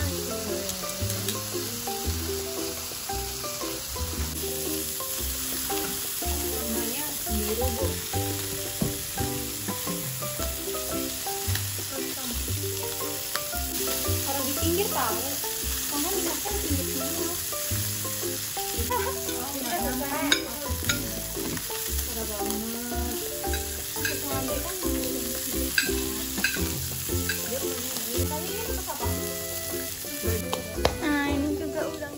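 Food sizzling as it fries in a nonstick skillet on a portable gas stove. Metal tongs click and scrape against the pan a few times in the second half as the pieces are turned.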